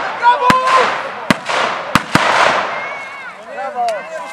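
Firecrackers going off: about five sharp bangs at uneven intervals, over shouting and cheering voices.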